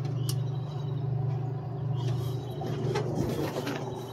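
Soda vending machine running with a steady low hum, with a couple of faint clicks about a third of a second in and again near the end.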